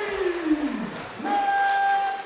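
Ring announcer's amplified voice drawing out a word in one long call that slides down in pitch, followed by a long steady high held note, over crowd noise in the arena.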